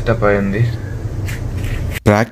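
A man's voice briefly at the start, then a steady low hum of room noise.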